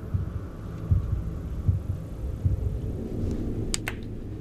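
Low heartbeat-like throb over a dark, steady drone in the film's sound design. Soft low thumps come about every three quarters of a second, and two short clicks sound near the end.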